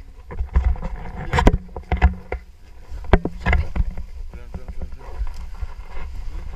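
Wind buffeting the microphone of a camera worn in a tandem paragliding harness, with a string of irregular knocks and rustles as harness, straps and jackets bump against it, loudest about a second and a half and three seconds in.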